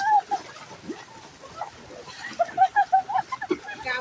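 Floodwater splashing around the legs of several people wading through it, with laughter and excited voices over it; a quick run of laughter comes in the second half, the loudest part.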